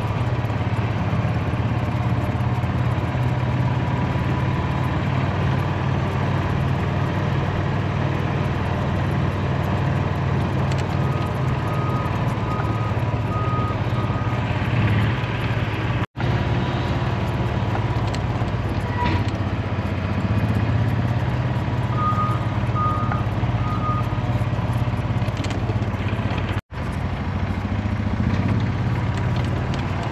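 A vehicle engine running steadily. A backup alarm sounds in a short run of beeps about a third of the way in and again near three-quarters through. The sound cuts out for an instant twice.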